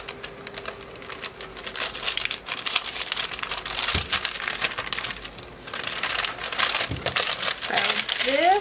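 A mailer bag being opened and handled, crinkling and rustling in a dense run of crackles, with a couple of soft thumps.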